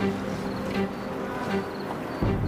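Suspenseful background music: sustained low tones with faint high chirps repeating at a regular pace.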